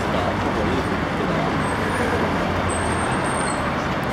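Steady traffic noise echoing under an elevated expressway, mixed with the voices of a spectator crowd.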